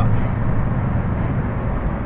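Steady engine and road noise inside the cab of a heavy goods lorry on the move.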